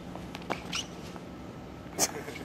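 Skateboard landing a flat-ground trick: a faint clack about half a second in, followed by a short high squeak, and a sharp click at the very end.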